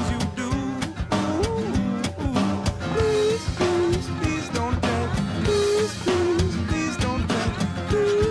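Background rock song with electric guitar and a drum kit keeping a steady beat.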